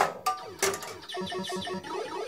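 Electronic music and game sounds from a Bally Eight Ball Deluxe pinball machine as a game is started: short synthesized notes, then a quick run of repeating low notes.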